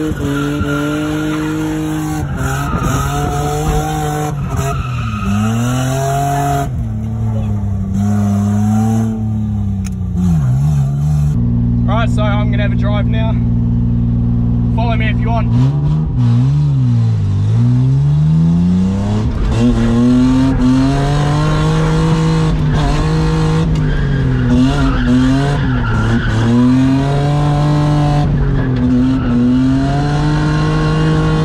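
Nissan Skyline R33 drift car's engine revving up and down over and over as it is thrown through a drift, with tyres squealing. Near the middle the revs hold at one steady pitch for a few seconds while the tyres screech.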